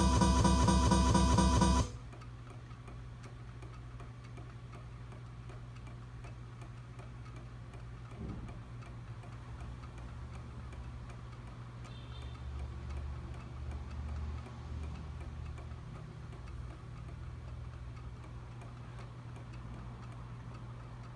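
Music with guitar cuts off about two seconds in. Then solar-powered swinging desk toys tick softly over a steady low hum.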